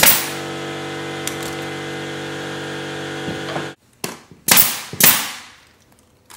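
Pneumatic nailer firing into wood trim: one sharp shot at the start and two more, the loudest, half a second apart near the end. Under the first part a steady machine hum runs and cuts off suddenly.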